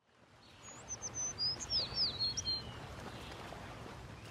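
Outdoor ambience fading in: a steady hiss with a bird giving a quick run of high chirps and whistles in the first half.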